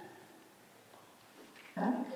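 Near silence: quiet room tone in a hall as a voice dies away, then a single spoken "yeah" near the end.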